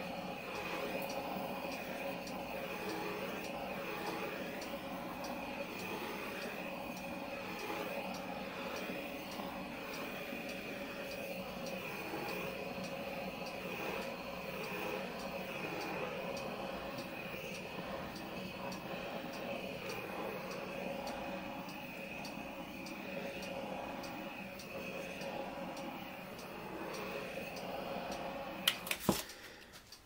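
Handheld torch flame running with a steady hiss over wet acrylic paint, heating it to bring silicone-oil cells to the surface. The hiss stops near the end, followed by a few sharp clicks.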